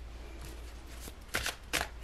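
A deck of tarot cards handled in the hands as a card is drawn: a few faint soft strokes, then two sharper card snaps about a second and a half in.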